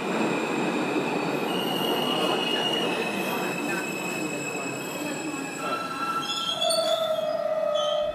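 Train running on rails, with long steady wheel squeals over the rolling noise; a lower squeal comes in near the end.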